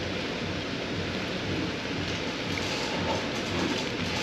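Windshield washer fluid pouring in a steady stream from a jug into a 2020 Audi Q5's washer reservoir, a continuous splashing hiss.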